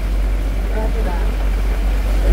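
Steady low rumble of a small open boat under way on the water, with people talking faintly on board.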